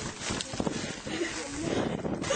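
Dried dung cakes being picked up by hand and dropped into a woven plastic sack: irregular crunching, scraping and rustling of dry lumps and sack fabric, with a few brief voices about a second in.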